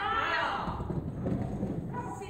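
A woman's high-pitched voice praising a dog, followed by a quick run of soft thuds.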